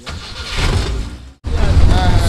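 Safari jeep driving along a dirt forest track: a steady low engine and wind rumble on the microphone, with a brief dropout a little past halfway.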